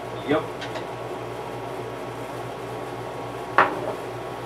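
A sharp clink, about three and a half seconds in, of an object knocked or set down against a glass display cabinet, with a fainter tick earlier, over a steady low room hum.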